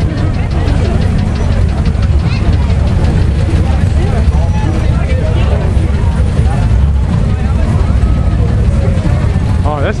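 Steady low rumble of classic car engines idling as the cars creep past at walking pace, with crowd chatter over it.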